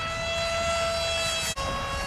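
Small brushless electric motor and propeller of a foam board RC flying wing whining steadily in flight, the pitch creeping slightly upward. About one and a half seconds in the sound cuts out for an instant and comes back at a slightly lower pitch.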